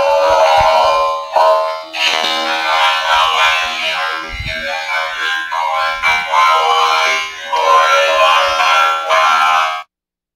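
Loud music made of held, sustained tones that change every second or so, cutting off suddenly near the end.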